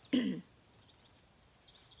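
A woman clears her throat once, a short low grunt falling in pitch, followed by low background with faint high bird chirps near the end.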